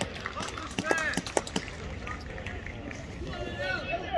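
Distant shouts and calls from players and spectators on an open football pitch, with a few sharp clicks in the first second and a half.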